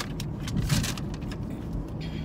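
Steady low hum of a car's cabin with the engine running, with paper rustling and handling clicks about half a second in.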